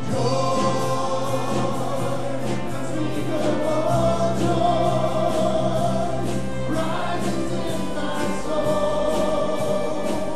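Church congregation and worship team singing a praise song together with piano accompaniment.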